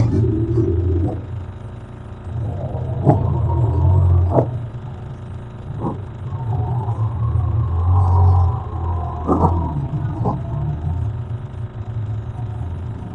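Recording of a radio signal, played back as audio, that the uploader takes for a strange signal from the direction of comet Elenin picked up by a radio telescope. It is a low rumbling hum that swells and fades, with wavering, whistle-like tones above it and a few sharp clicks.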